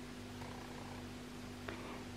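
Faint steady low hum of room tone, with one soft click near the end.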